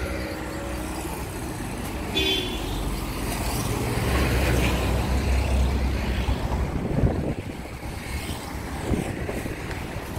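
Highway traffic passing close by: a heavy vehicle's deep rumble swells in the middle and fades, with a short horn toot about two seconds in. A sharp knock near seven seconds in.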